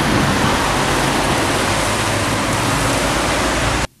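Steady, loud hiss of rain falling on a wet street, heard on a camera microphone, cutting off suddenly near the end.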